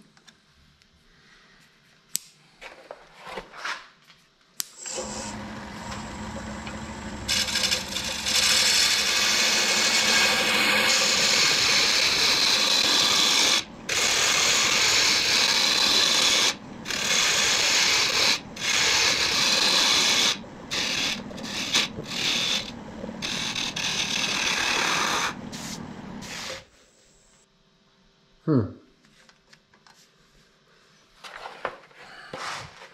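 A turning tool cutting into a spinning block of hard wood on a wood lathe: a loud, steady rasping hiss of the cut. It starts about five seconds in, breaks off briefly several times as the tool lifts away, and stops a few seconds before the end.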